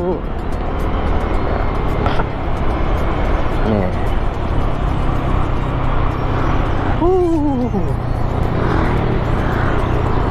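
Wind rushing over the microphone and road noise from a Yamaha scooter cruising at about 40 km/h, with a steady low engine hum. A brief falling pitched sound comes about four seconds in and again about seven seconds in.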